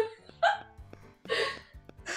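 A woman laughing in three short bursts, with soft music playing underneath.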